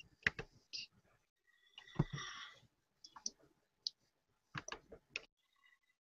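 Faint, irregularly spaced clicks of a computer keyboard being typed on slowly, key by key, with a brief noisier sound about two seconds in.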